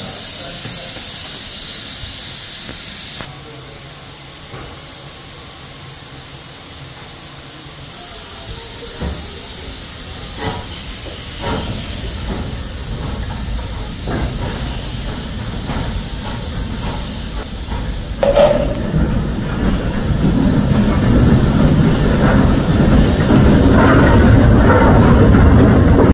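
Small steam tank locomotive hissing steam, with scattered metallic knocks. About two-thirds of the way in the sound grows into a louder, rough low rumble as the engine works and exhausts, the loudest part coming near the end.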